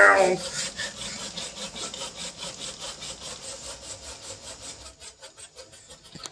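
Home-built all-lead-screw 3D printer running a print at 150 mm/s: its stepper motors and lead screws give a steady rasping sound with a quick, even pulse. It drops in level about five seconds in.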